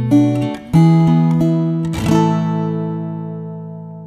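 Acoustic guitar fingerpicked: a few single notes, then a full chord struck just under a second in and one more note after it, left to ring and fade away slowly as the song's final chord.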